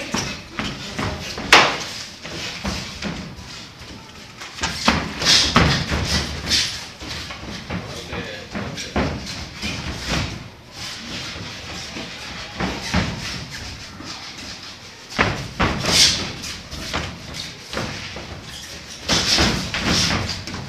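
Boxing gloves landing punches during sparring: irregular thuds and slaps, with the sharpest hits about a second and a half in and again near the middle of the second half.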